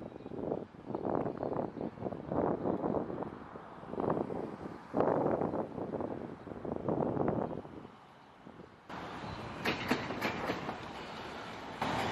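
Freight train rolling past, its rail cars clattering over the track in uneven surges. The sound drops away about eight seconds in, leaving a steadier, quieter rumble with a few sharp clicks.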